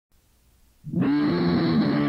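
Distorted electric guitar striking and holding a droning chord at the opening of a punk song. It comes in suddenly just under halfway through, after near silence.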